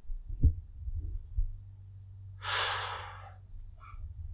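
A man breathing out heavily into a close microphone, one long airy exhale about two and a half seconds in, after a couple of soft low thumps.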